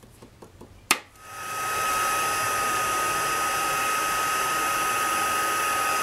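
Craft heat embossing tool switched on with a click about a second in, then running steadily with a fan rush and a thin steady whine as it melts black embossing powder on the stamped paper.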